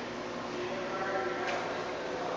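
Steady room hiss, with a faint voice-like pitched sound about a second in and a single short click.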